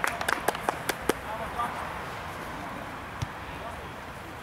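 Several sharp hand claps, about five a second, in the first second or so as a goal goes in. Then faint voices carry across the pitch.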